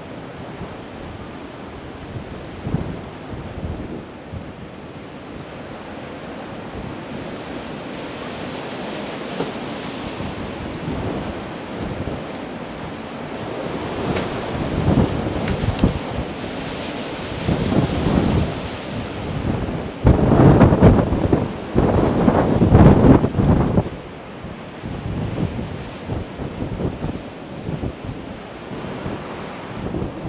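Storm wind buffeting the microphone over a steady rushing background, building in irregular gusts that are loudest about twenty to twenty-four seconds in.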